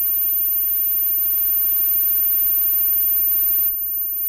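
A loud, steady, noisy wash of sound with a hum from a live band's amplified instruments, with no clear notes, cutting off suddenly near the end.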